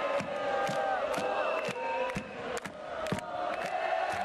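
Large concert crowd cheering and shouting, many voices overlapping near the microphone, with scattered sharp claps.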